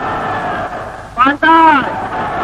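Men's voices shouting "Banzai!" together with arms raised, one long shout starting just over a second in, over a steady haze of crowd noise.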